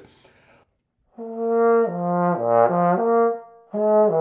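Tenor trombone playing a lip slur begun with an air start, with no tongued attack: a smooth run of notes stepping down to a low note and back up. A second slur begins near the end.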